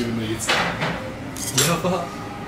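Tableware clinking at a dining table: chopsticks and a ceramic plate being handled, with a few short clatters.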